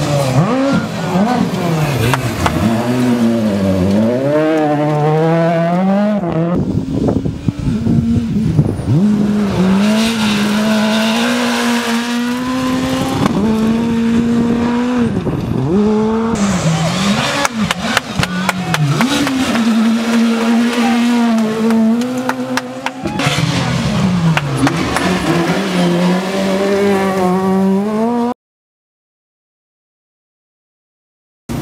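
Super 2000 rally cars' four-cylinder engines revving hard at high rpm, the pitch climbing and dropping with gear changes as cars pass by at speed, in several separate passes one after another. The sound stops suddenly a couple of seconds before the end.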